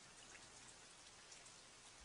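Near silence: a faint, even hiss with scattered soft ticks, like light rain.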